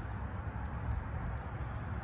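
Faint, scattered metallic jingling and ticks over a steady low outdoor rumble.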